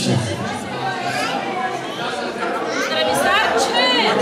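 Several people talking over one another at a table: a busy chatter of overlapping voices, with a higher voice rising above it near the end.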